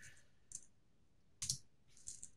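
Two faint clicks from computer input, a soft one about half a second in and a louder, sharper one about a second and a half in.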